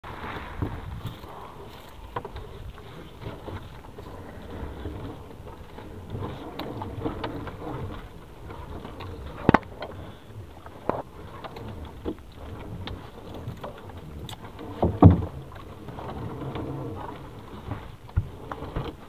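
Gill net being hauled by hand into a small boat: a steady wash of water and net sounds, with scattered sharp knocks against the boat, the loudest about 15 seconds in.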